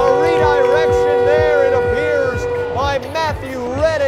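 Music with long held notes under a melodic singing voice, played right after a goal.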